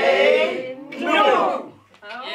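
Speech: the end of a countdown called out, ending with a shout of 'nu!' ('now!') about a second in.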